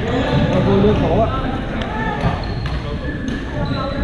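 Badminton rackets striking shuttlecocks across several courts, a scattering of sharp smacks in a large gym hall, over the chatter of players' voices.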